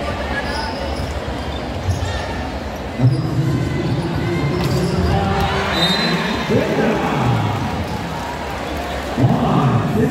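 Hall noise in a large gym, with a ball bouncing on the hard court. Men's voices call out from about three seconds in and grow louder near the end.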